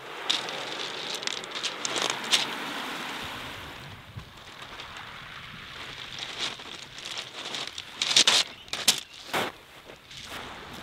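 Small waves washing over a shingle beach, with wind on the microphone, the hiss strongest in the first few seconds. A few sharp crunches of pebbles near the end.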